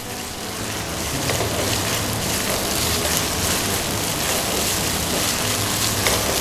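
Red curry paste frying in hot oil in a wok while being stirred: a steady sizzle that swells over the first second and then holds.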